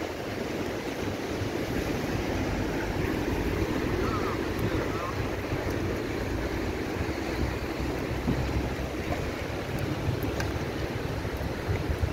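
Steady wash of sea waves breaking on a rocky shoreline, mixed with wind buffeting the microphone.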